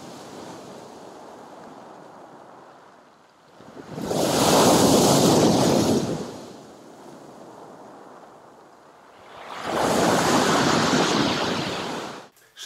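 Sea waves breaking on a pebble shore and against a concrete pier footing. Two loud surges of surf come about four seconds in and again near the end, with a quieter wash in between.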